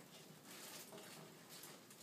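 Near silence in a small room, with a few faint brief rustles from hands handling materials.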